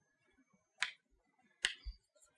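Chalk clicking against a blackboard during handwriting: two sharp clicks, about a second in and near the end, the second followed by a faint low knock.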